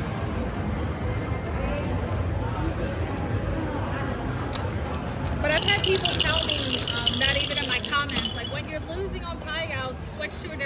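Casino table ambience: voices talking in the background. About halfway through, a louder stretch of rapid high clicking and rattling lasts two to three seconds.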